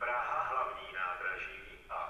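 Automated station loudspeaker announcement in Czech: a recorded male voice from the HaVIS public-address system, with a short pause near the end.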